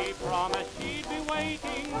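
A 1928 Banner 78 rpm shellac record playing a jazz dance band's instrumental bars, with wavering melody lines over the band. Surface crackle and a few sharp clicks from the disc run under the music.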